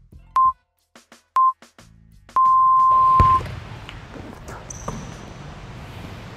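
Countdown timer beeps: two short beeps a second apart, then a long beep about a second long that signals the start of the drill. Right after the long beep comes a thump and the steady background noise of a gym.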